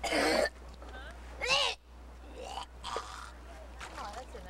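Two short, loud vocal outbursts: a harsh shout or laugh right at the start, and a higher cry that bends in pitch about a second and a half in. Fainter voice sounds follow, over a low steady hum.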